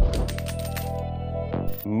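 Jingling-coins sound effect, a rapid run of metallic clinks lasting about a second, marking a winning trade, over synth background music.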